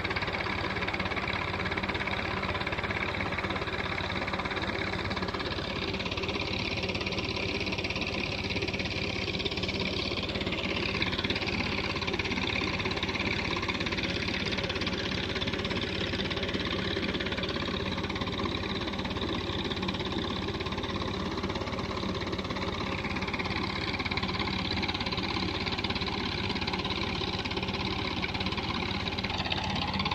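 Tractor's diesel engine running at a steady speed, driving a tubewell water pump, with a constant hum.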